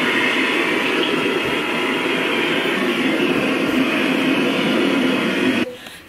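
A steady, loud rushing noise that cuts off suddenly near the end.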